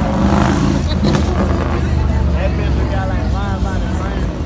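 A car's engine and exhaust rumbling as it pulls away close by, with a burst of louder noise in the first second or so; people's voices talk over it.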